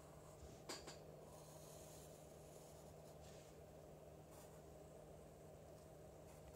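Near silence: room tone with a steady low hum and faint pencil strokes on paper.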